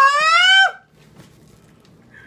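A person's loud, high-pitched drawn-out cry, "Ah!", held on one slightly rising note and cut off abruptly under a second in.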